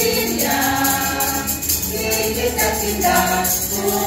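A group of voices singing a Christmas carol together in Tagalog, a continuous sung melody.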